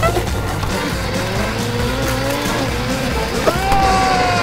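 Cartoon sound effects of a racing hot-rod car, its engine revving and tyres screeching, over background music; a sharp screech rises near the end and holds.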